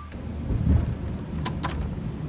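Uneven low rumble inside a car cabin, with two quick sharp clicks close together about one and a half seconds in.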